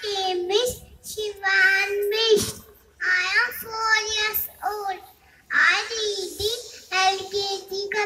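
A young boy singing into a microphone in short phrases with brief pauses between them, holding some notes.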